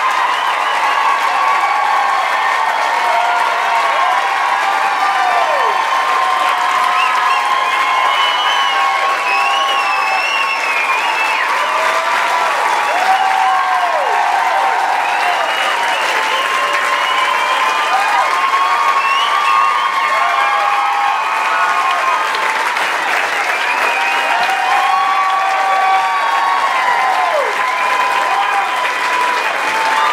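Theatre audience applauding steadily and at length, with whoops and shouts from the crowd rising over the clapping throughout.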